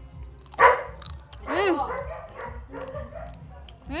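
A dog barks twice: a loud bark about half a second in and a second one a second later.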